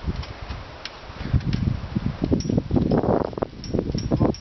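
Wind buffeting the microphone in an uneven low rumble, with a few faint clicks over it.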